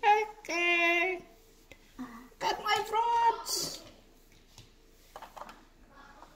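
A child's voice singing out two short vocalised phrases, the first with a single held note about half a second long. A few faint clicks follow near the end.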